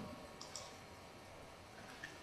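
Near silence: faint room tone with a faint click or two about half a second in.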